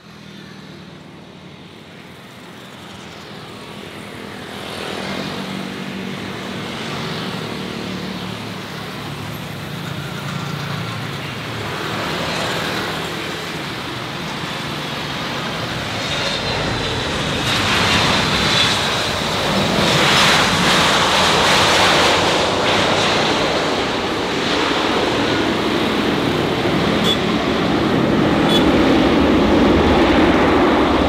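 Boeing 767-300 airliner landing: the sound of its two jet engines grows steadily louder on approach. It gets louder again from a little past halfway, as the jet touches down and rolls out with its spoilers up.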